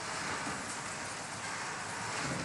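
Steady hiss of background noise.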